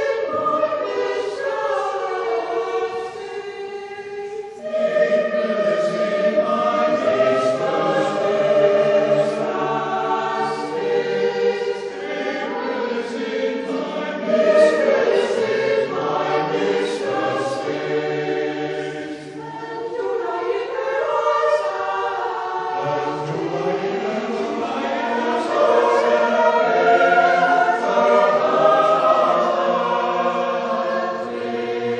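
Mixed choir of men and women singing sustained chords, with the lower voices coming in about four seconds in, dropping out near the middle and returning a few seconds later.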